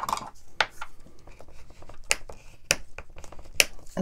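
A bone folder rubbed along the fold of a heavy cardstock tag to sharpen the crease, making a few short, sharp scrapes over about three seconds.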